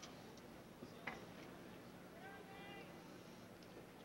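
Near silence: a faint steady hum under the broadcast audio, with a couple of faint clicks and a brief faint voice about halfway through.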